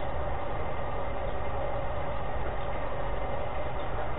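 Steady background noise of an audio recording: a low hum with hiss and a few faint steady tones, unchanging and with no speech.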